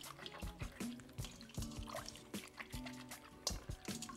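Hands swishing and squeezing herbs in a bowl of water, with small splashes and drips, under soft background music.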